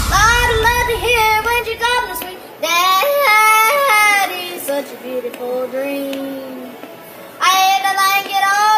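A boy's sampled yodeling vocal in a dubstep remix, with a deep bass under it for the first two seconds. The voice then goes on nearly alone, softer through the middle, and comes back louder near the end.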